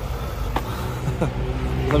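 Low, steady rumble of a vehicle engine, with a short laugh and a word spoken over it.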